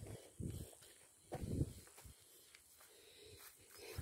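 Footsteps on grass and dirt: a few soft, low thuds in the first two seconds, then quieter.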